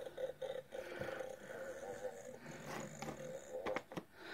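Fart Ninjas light-activated novelty toy playing its faint, drawn-out electronic fart sound through a small speaker, muffled by its plastic blister pack, with a few clicks of fingers on the plastic near the end.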